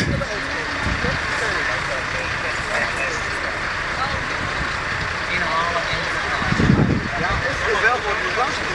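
A parked fire engine running steadily, with people's voices talking under it; a low rumble swells briefly near the end.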